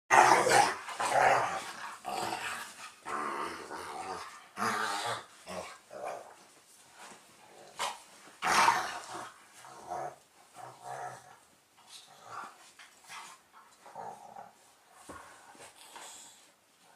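A German Shepherd and a smaller brown dog play-fighting, growling in irregular bursts that are loudest at the start and again about eight seconds in, then quieter and sparser toward the end.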